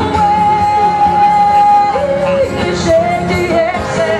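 A woman singing live to her own strummed acoustic guitar, amplified through a stage PA. She holds one long high note for about two seconds, then moves to lower, shorter notes.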